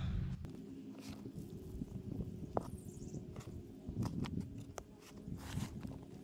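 Hands sifting and crumbling moist leaf bedding in a plastic tray, giving soft, scattered rustles and crunches as handfuls are lifted and dropped. A faint steady low hum runs underneath.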